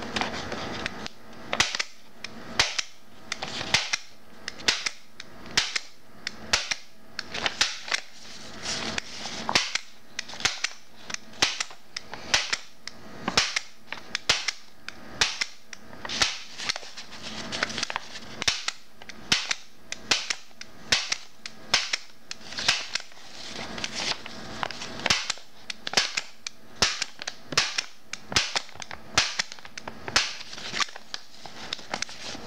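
MAX HD-50DF flat-clinch stapler, held in one hand, firing staple after staple through paper: a long run of sharp snaps, roughly one to two a second, with the paper shifting between strokes.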